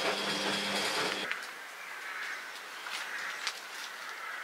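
A steady electrical hum for just over a second, which cuts off abruptly. It gives way to quiet outdoor ambience with a few light clicks.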